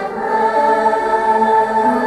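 Large mixed youth choir of girls and boys singing, holding a long sustained chord that moves to new notes near the end.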